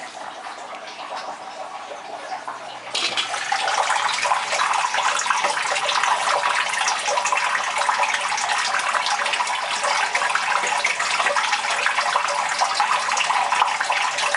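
Steady running, splashing water in a turtle tank. It becomes suddenly much louder about three seconds in.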